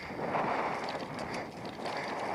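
Bicycle rolling over a rough stubble field, with wind on the microphone: a steady noisy rush with a few faint rattles.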